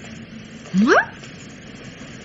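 A woman's voice saying a single word, 'Moi ?', in one short, steeply rising exclamation, over the faint steady hiss of an old broadcast recording.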